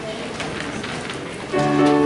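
Low room noise with faint rustles, then about a second and a half in, live music starts with a held chord from piano and acoustic guitar.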